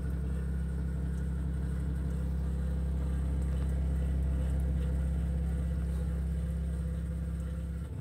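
Xiaomi Mijia VDW0401M dishwasher giving a loud, steady low hum from its base, the strange sound the owner reports alongside a leak from the bottom. The hum starts at the opening and cuts off shortly before the end, dropping to a quieter hum.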